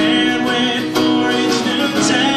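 An acoustic guitar strummed steadily while a man sings, in a live performance of a slow original song.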